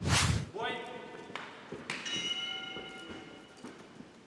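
Edited-in intro sound effect: a sharp swishing hit with a low thud, then ringing tones, the second one starting about two seconds in and fading away.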